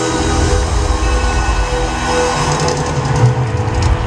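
Live band music through a concert PA, an instrumental passage of held chords over a heavy low rumble and a moving bass line.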